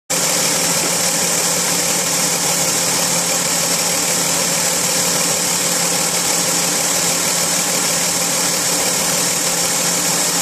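2001 Ford Escape's 3.0 L Duratec V6 idling steadily in the engine bay, an even hum under a constant high hiss, with no revving.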